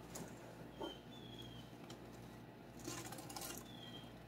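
Quiet room with a steady low hum; grated cheese being sprinkled by hand onto a pizza gives a soft brief rustle about three seconds in. Two faint short high chirps sound about a second in and again near the end.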